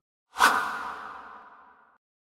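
A whoosh sound effect for an animated title transition. It starts sharply about half a second in and fades away over the next second and a half.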